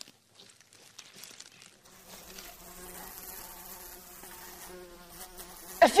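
A housefly buzzing: a steady buzz that sets in about two seconds in, after faint scattered rustles and ticks.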